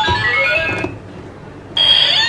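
Electronic keypad piggy-bank safe playing a short tune of stepped electronic beeps after its code is entered, the signal that the password is accepted. A second electronic tune starts near the end.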